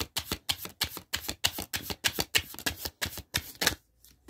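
Tarot cards being shuffled by hand: a quick, steady run of short card slaps, about six a second, that stops just before the end.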